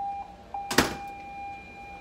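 A steady electronic beep tone, held with one short break, and a sharp knock about a second in.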